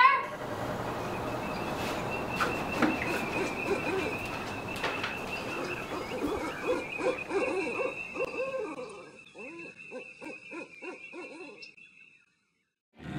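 Owl hooting: a run of short, evenly repeated notes, about three a second, that grow fainter and fade out near the end, over a thin steady high-pitched tone.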